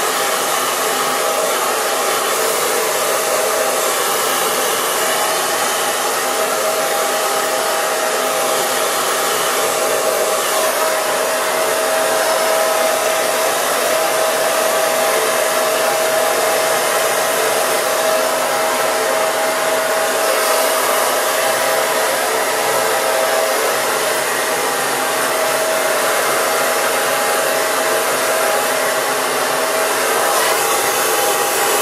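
Handheld hair dryer running steadily, blowing on wet hair: a loud, even rush of air with a constant whine.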